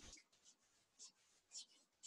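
Near silence, with two faint, brief rustles about one and one and a half seconds in: hands rubbing over the arms and clothing during a self-massage.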